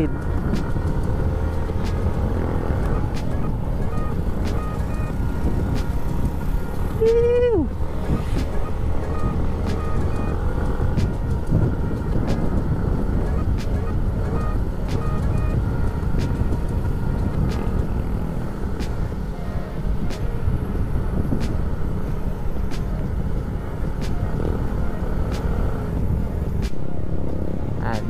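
Motorcycle engine running with wind rushing over the camera microphone while riding along a road at a steady pace. About seven seconds in, a short pitched sound drops sharply in pitch.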